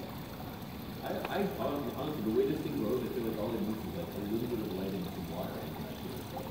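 A second person talking faintly, away from the microphone, over the steady trickle of the indoor pond's stream.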